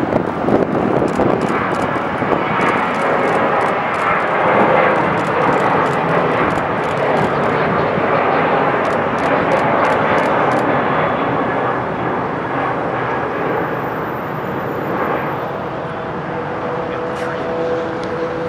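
Boeing 737-900 jet airliner taking off and climbing out, its twin CFM56 turbofan engines at takeoff power giving a loud, steady roar. The roar eases slightly in the later seconds as the jet climbs away, with a faint steady whining tone showing through near the end.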